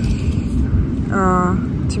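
A woman's drawn-out, level-pitched hesitation sound, "uhh", about a second in, over a steady low rumble of background noise.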